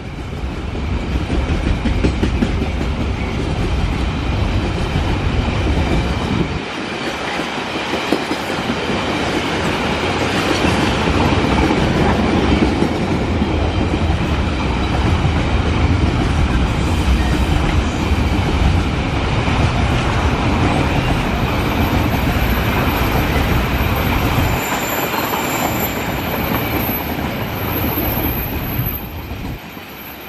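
Long train of empty coal hopper wagons rolling past on the rails: a steady rumble and clatter of wheels on track, with a thin high squeal in the last third.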